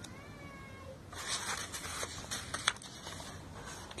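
A cat meows once, faintly, in the first second: a thin, slightly wavering call. Then papers rustle and shuffle for a couple of seconds, with a sharp tap among them.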